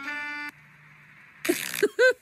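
Sustained organ-like keyboard chords that cut off suddenly about half a second in. After a short quiet gap, a loud breathy burst of laughter comes near the end.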